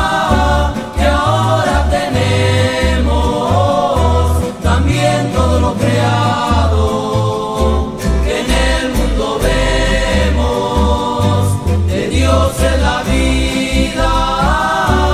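Evangelical Christian song sung by a male vocal group in harmony, over acoustic guitars and a bass line that walks in short notes.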